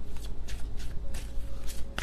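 A deck of tarot cards being shuffled by hand: an irregular run of quick card slaps, several a second.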